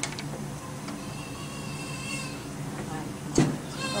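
A newborn baby gives a faint, thin, high-pitched whimper about a second in, over a steady low hum. A sharp knock near the end is the loudest sound.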